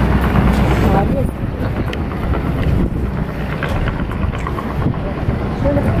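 Junkers Ju 52's three radial engines running at taxi power, a steady low rumble.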